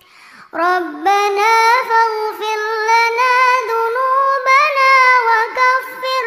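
A girl's voice in melodic Quran recitation (tilawat). After a brief pause she starts about half a second in and holds one long phrase, drawn out with wavering melodic turns.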